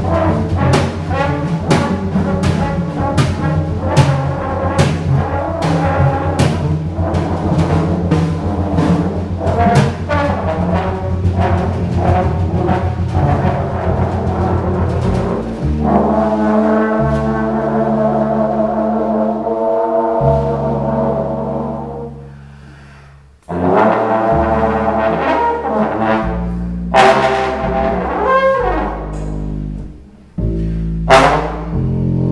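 Live trombone, upright double bass and drum kit playing together, busy drumming and cymbals under the trombone in the first half. About halfway through the drums thin out and the trombone holds long notes over the bass, dropping away briefly before the playing resumes with a few cymbal hits.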